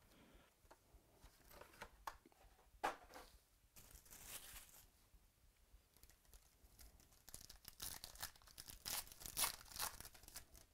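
A foil trading-card pack from a 2017-18 Select Basketball box being handled and torn open, its wrapper crinkling. Light rustles and taps come early with a sharp snap about three seconds in, and the densest tearing and crinkling comes in the last couple of seconds.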